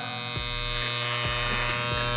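Electric hair clippers with a guard fitted running with a steady buzz as they are pushed up through short, thick hair on the back of a head.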